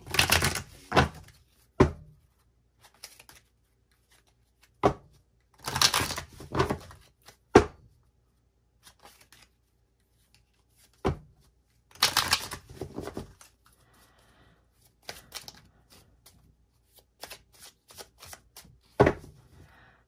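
A deck of tarot cards being shuffled and handled, in irregular clattering bursts with short pauses between.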